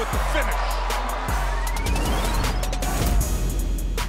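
Broadcast transition sound effect over a music bed: a thin tone sweeps steadily upward for about a second and a half, then a low rushing whoosh swells in the last second or two.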